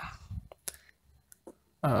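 A few scattered, faint computer clicks at the desk, followed near the end by a short spoken "uh".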